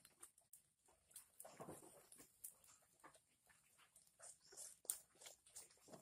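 Faint, scattered crackles and clicks from a small wood fire under a wire grill, with a brief muffled sound about a second and a half in.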